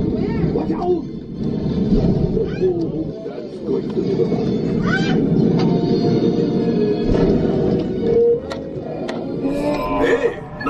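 Flight-simulator ride soundtrack: orchestral music with a deep rumble of effects filling the cabin, and riders' voices rising over it now and then.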